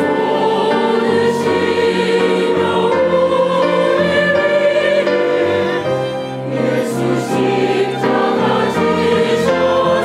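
Mixed choir of men and women singing a Korean sacred anthem, with words about Jesus shedding water and blood for us and bearing the cross.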